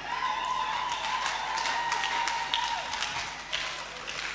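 Quick footsteps on a hard floor, a person hurrying, with a steady high tone held for about three seconds before it fades.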